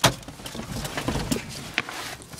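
A sharp click, then rustling and light knocks as someone moves to climb out of a car, with another click near the end.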